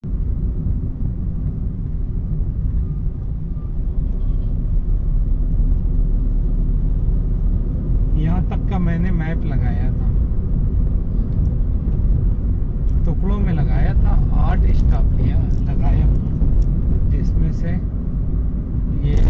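Steady low road and engine rumble inside the cabin of a car cruising at highway speed.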